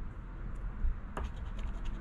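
A poker chip scraping the scratch-off coating off a paper lottery ticket: short scratching strokes, one sharper about a second in.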